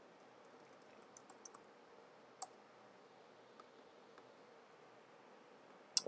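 Computer keyboard keys being typed: a few faint keystrokes about a second in, then a single sharper key press, against a quiet room background.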